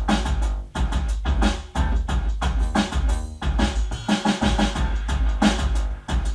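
Electronic beat from an Alesis SR-18 drum machine, with bass drum and snare, playing together with a bass line and synth parts that it drives over MIDI.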